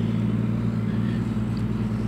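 Road traffic: a motor vehicle engine running with a steady low hum.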